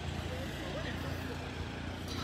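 Vehicle engine running steadily with a low hum, with faint voices in the background.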